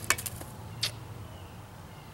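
A glass beer bottle being handled over a drinking glass: a quick run of light clicks right at the start and one more click a little under a second in, then a faint steady hum.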